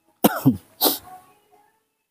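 A person coughing twice in quick succession, the first cough with a falling voiced sound, the second sharper and breathier.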